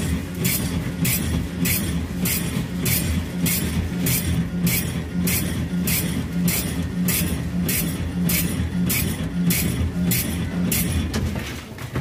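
Automatic bread slicing machine running as it slices a loaf of dark bread: a steady motor hum with a sharp, regular stroke about twice a second.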